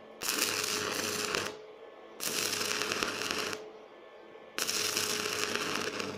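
A stick-welding arc on a steel-rod frame, struck three times in a row. Each burst lasts about a second and a half, with a low steady hum under the noise and short quiet pauses between.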